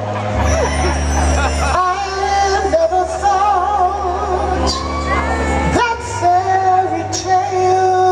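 Live R&B band playing a slow soul ballad: long held melody notes with vibrato over a steady bass line, with a few soft cymbal splashes.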